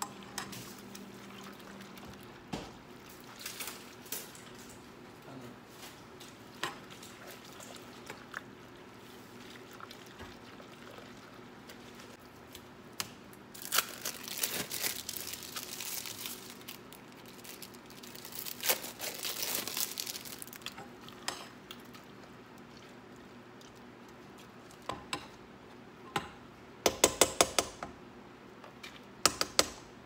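Kitchen handling sounds: a utensil clinking against a saucepan of macaroni now and then, and plastic cheese-slice wrappers crinkling in two spells around the middle as slices are unwrapped. Near the end comes a quick rattle of clicks as a metal spoon stirs the pan.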